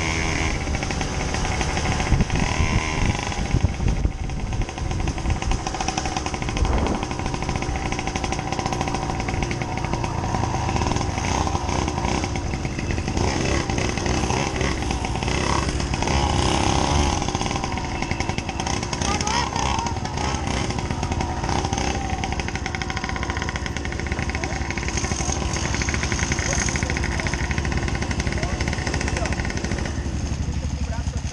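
Motorcycle engines running, heard from the camera rider's own bike, with the engine note rising and falling as the throttle changes; a small Mobylette moped engine runs alongside.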